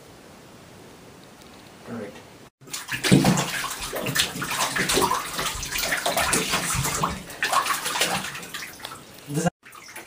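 Water splashing and sloshing in a filled bathtub as a person moves and thrashes in it. It starts suddenly about three seconds in and cuts off abruptly near the end.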